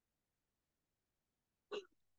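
Near silence, broken near the end by one short, sharp sound.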